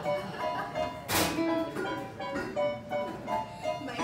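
Roland Juno-DS keyboard playing an accompaniment passage of separate melodic notes, with one brief sharp noise about a second in.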